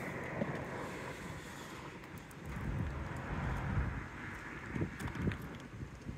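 Wind buffeting the microphone: a low, uneven rumble that swells and eases.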